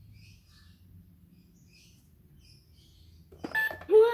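LeapFrog Count Along Register toy cash register sounding near the end: a click, a short electronic beep, then a loud pitched electronic sound that rises and then falls, as an item is scanned.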